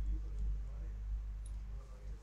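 Low, steady electrical hum on the recording, with a few faint clicks.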